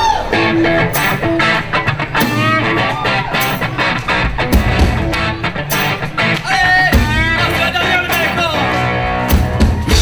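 Live band playing amplified music: electric guitar, bass and drum kit keeping a steady beat.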